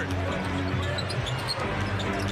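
Basketball being dribbled on a hardwood court, the bounces heard over steady arena music.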